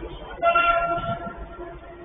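A single steady horn-like tone, starting abruptly about half a second in and lasting just under a second.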